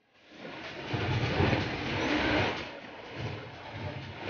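Poolside noise of swimmers splashing through the water during a race, an even rushing wash with a faint din of voices behind it. It starts after a brief silent gap.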